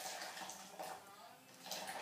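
Boiling water poured from an electric kettle into a blender jar of thick soup: a faint, steady splash of running water.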